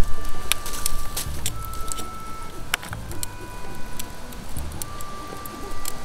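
Beef sizzling on a wire grill over a wood fire, with scattered sharp crackles and pops, a louder one a little under three seconds in. Soft background music with held notes plays underneath.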